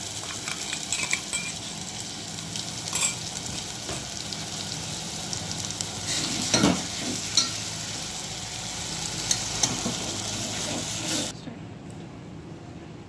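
Ground masala paste sizzling as it fries in hot oil in a metal pot, stirred with a metal ladle that clicks against the pot a few times. The sizzling cuts off about a second before the end.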